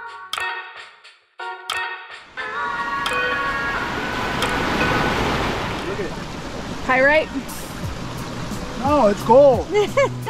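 Background music with plucked notes cuts off about two seconds in, giving way to the steady rush of a small mountain creek running over rocks where it feeds the lake. Brief voices come in twice near the end.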